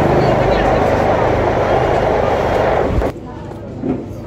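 Loud babble of many people talking at once in a crowded room. It drops off suddenly about three seconds in, leaving quieter voices.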